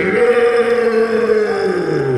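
A man's voice through the PA holding one long drawn-out vocal yell, steady in pitch, then sliding down near the end.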